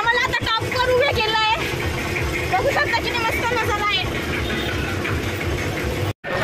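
Voices talking, mostly in the first second and a half and again around the middle, over a steady low mechanical rumble and hum.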